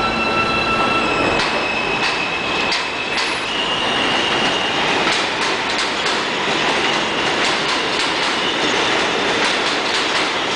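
R160A subway train running past on elevated track. High steady whining tones shift in pitch over the first few seconds, then from about five seconds in the wheels clatter rhythmically over the rail joints.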